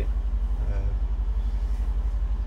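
Mercedes-AMG C63 S 4.0-litre twin-turbo V8 idling, a steady low rumble with an even pulse, heard from inside the cabin.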